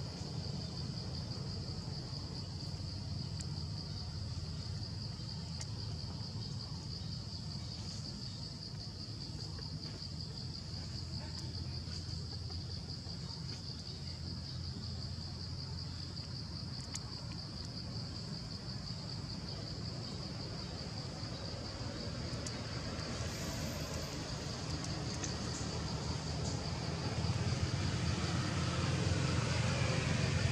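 Outdoor ambience: a steady high drone of insects over a low rumble, growing slightly louder near the end.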